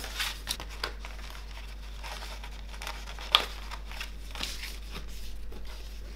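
Paper sheets rustling and crinkling as they are handled, with a few light clicks, the sharpest just over three seconds in.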